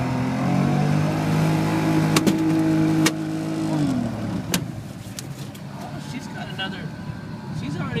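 Boat motor running, its pitch rising about half a second in and dropping back after about four seconds, with a few sharp slaps of a steelhead flopping on the boat's deck.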